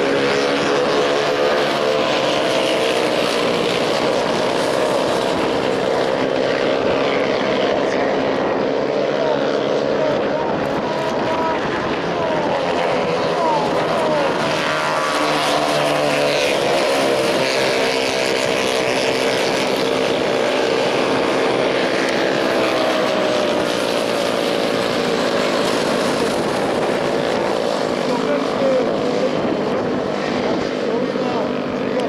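Several minimidget race cars' small engines running together, a steady buzz whose pitch keeps rising and falling as the cars accelerate and lift through the turns.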